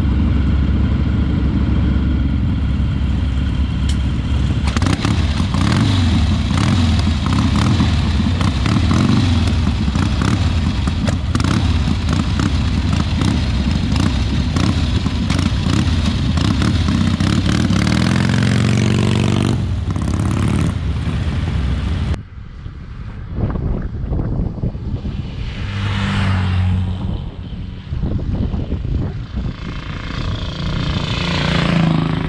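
Harley-Davidson V-twin motorcycle engine running loudly at close range with a clattery, lumpy beat, revving up near the end of that stretch. About 22 seconds in the sound changes abruptly to motorcycle riding noise with wind on the microphone.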